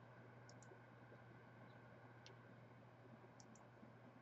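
Near silence with a faint low hum, broken by a few faint computer mouse clicks: a quick pair about half a second in, a single click past the middle, and another quick pair near the end.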